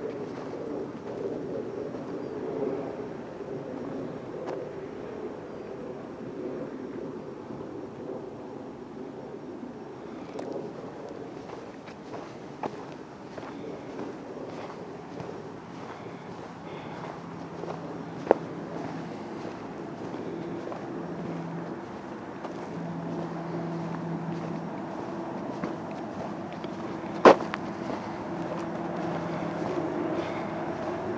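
Steady drone of distant highway traffic, with a low engine hum coming and going in the second half. Two sharp clicks stand out, the louder one near the end.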